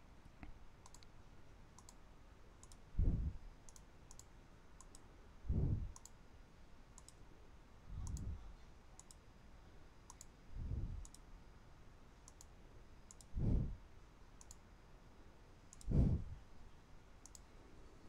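Computer mouse clicking, a short sharp click every half second to a second, under soft low thumps that come about every two and a half seconds.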